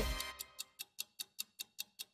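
Ticking-clock sound effect: sharp, evenly spaced ticks about five a second, starting about half a second in as a voice fades out.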